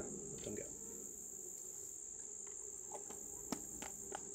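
Steady high-pitched chorus of crickets, an unbroken trill, with a light click about three and a half seconds in.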